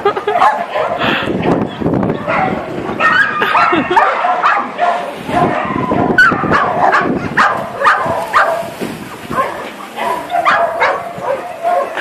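Dogs barking and yipping during play, in many short calls one after another.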